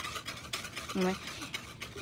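A whisk stirring cornstarch into water in a plastic pitcher: a rapid run of light, even scraping strokes as the starch is dissolved. A brief vocal sound comes about a second in.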